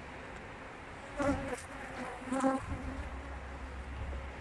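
Honeybees buzzing close to the microphone: two loud, short fly-bys about a second apart, each a steady-pitched hum, with a fainter low rumble near the end.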